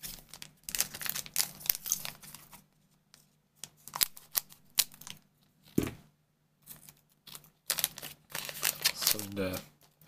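Foil trading-card booster pack crinkling as it is handled and torn open, in bursts of rustling with sharp clicks. There is a single dull knock just before six seconds in, and a low voice near the end.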